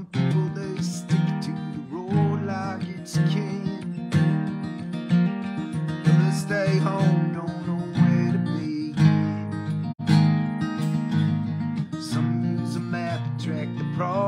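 Acoustic guitar strummed steadily in a folk song accompaniment, with chords ringing between regular strokes.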